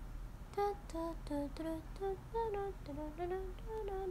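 A young woman humming a short tune softly, a run of short stepped notes beginning about half a second in.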